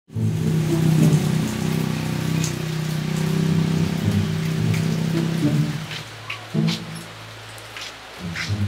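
Steady rain falling on a wet paved road, with scattered drips, under background music of held low notes. The music fades out about six seconds in, leaving mostly the rain.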